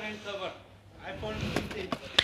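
Faint background voices in a shop, with a couple of light plastic clicks as a blister-packed diecast car is handled and set back on a shelf.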